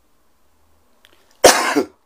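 A man coughs once, sharply and loudly, about a second and a half in, after a near-silent pause.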